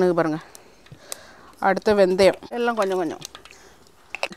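A woman's voice in three short phrases, with quiet pauses between them.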